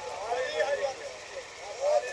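A man's voice in bending, drawn-out tones, fainter than full recitation, swelling briefly near the end over a faint steady low background hum.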